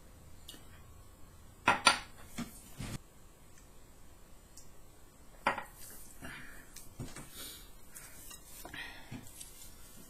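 Tableware clinks: a drinking glass and a plate knocking on a stone countertop, a few short sharp clicks with the loudest pair about two seconds in and another about five and a half seconds in.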